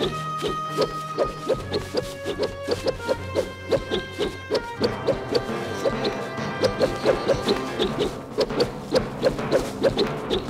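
Swishing blade-through-air sound effects dubbed onto a film fight scene, repeating rapidly at about three or four whooshes a second, over background music with sustained notes.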